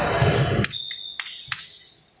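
Loud hall noise cuts off abruptly about two-thirds of a second in, followed by a single steady high-pitched beep lasting just under a second, with sharp clicks at its start, middle and end.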